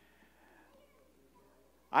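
Faint murmur of distant voices and room tone in a large hall. A man's voice starts loudly right at the end.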